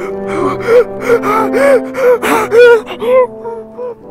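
A man's short, wordless vocal sounds, each one rising and falling in pitch, coming in a quick string of about ten over sustained background music.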